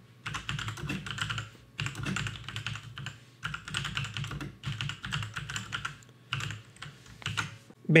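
Typing on a computer keyboard: quick runs of keystrokes broken by short pauses, three of them.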